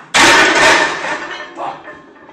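A loaded barbell crashing down onto a power rack's safety bars as a failed squat is dumped forward: one very loud metal crash about a fifth of a second in, ringing and fading over about a second.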